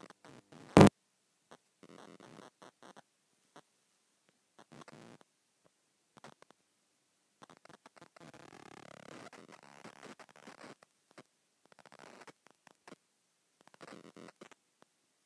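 A cable plug pushed into a socket, with one loud, sharp pop about a second in, followed by faint rustling and handling noise from the camera being moved about.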